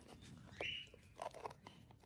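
Faint clicks of a clear plastic container's blue lid being pressed shut, with a short, faint peep from a bird about half a second in.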